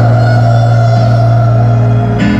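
Live pop music played loud through a stadium sound system: keyboard-led, with long held chords over a sustained low bass note.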